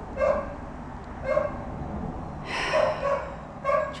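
A dog barking: about five short barks, roughly a second apart.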